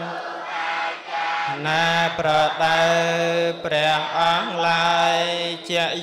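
Buddhist chanting: a drawn-out melodic chant sung in long, steady held notes, with short breaks between phrases.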